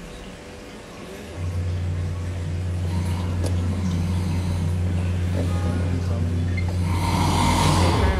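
A small electric ear-cleaning device starts up about a second and a half in and runs with a steady low buzz. A hissing noise swells over it near the end.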